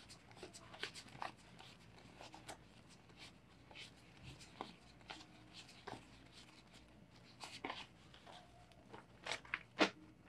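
Paper 20-peso banknotes rustling and snapping softly as they are thumbed through one by one in a hand count, a steady run of small crisp clicks. Near the end, a few louder sharp taps as the bundle is squared up in the hands.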